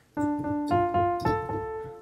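Piano playing the opening D minor phrase: D struck twice, then D and F together, then D and A together, each note ringing on. The four strikes fall within about the first second and a quarter.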